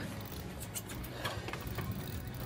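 Low steady hum of a boat's idling engine, with a few faint scattered clicks over it.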